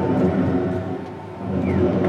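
Soundtrack of an outdoor projection-mapping show played over loudspeakers: a loud, sustained drone of several steady low tones that dips a little past a second in and swells back up.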